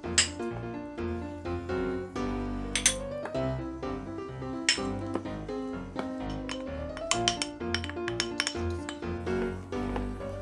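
Background music with held notes, over scattered sharp clinks of a spatula against the bowl as egg yolks are folded into beaten egg whites. A quick run of clinks comes in the last few seconds.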